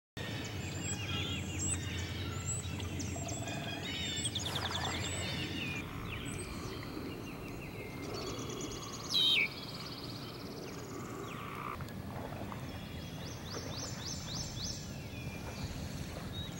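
Several songbirds singing and calling together, in overlapping chirps and rapid trills over a steady low background noise. One loud note slurs downward about nine seconds in.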